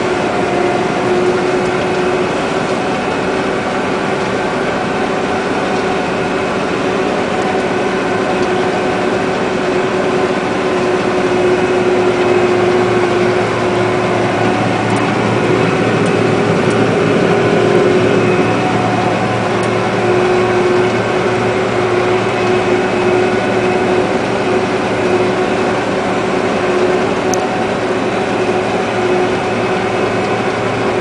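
A John Deere combine running steadily while harvesting wheat, heard from inside the cab: a constant engine and machinery drone with a steady whining tone.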